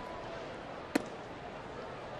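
A baseball smacking once into the catcher's leather mitt on a taken pitch, called a ball, over a faint steady ballpark crowd murmur.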